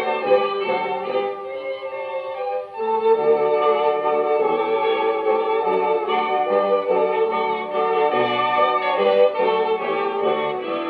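A dance band playing a waltz from a Columbia 78 rpm record, heard through an HMV 163 acoustic gramophone, with brass and violins and a dull sound lacking any high treble. There is a brief lull nearly three seconds in before the full band comes back in.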